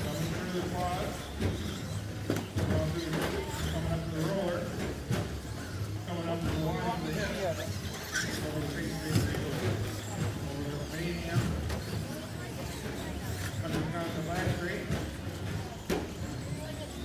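Electric RC short-course trucks racing: motors whining up and down in pitch as the cars accelerate and brake, with scattered sharp clacks, over indistinct background chatter and a steady low hum.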